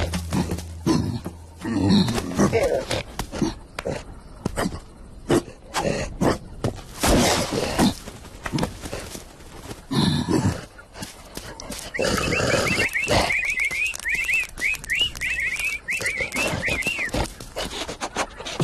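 Cartoon sound effects: animal grunts and growls from the animated lion and gorilla, with many short knocks and thumps. From about twelve seconds, a quick run of high chirps like a small bird twittering.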